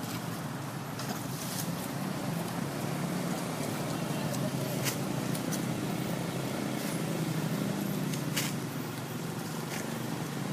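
Road traffic passing close by: motorbikes and cars making a steady engine hum, with a few short sharp clicks now and then.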